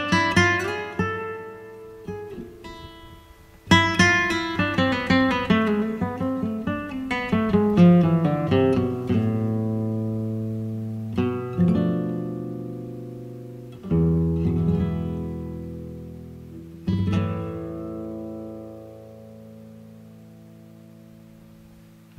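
Background music: an acoustic guitar picking single notes, then several strummed chords, each left to ring out and fade.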